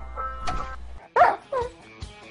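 Small dog giving two short yelping whines about half a second apart, the first louder, each bending in pitch. They come in over faint TV sound and music.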